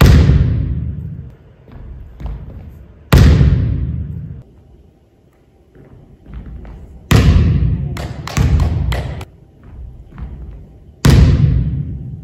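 Volleyball hitting a wooden gym floor with loud thuds that ring on in the hall's echo, about four seconds apart. A run of quickening bounces comes between about seven and nine seconds as the ball bounces and settles.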